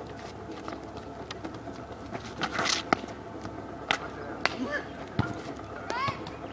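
A soccer ball being kicked and played on asphalt: scattered sharp knocks about a second apart, with a brief scuffing burst a little before the middle.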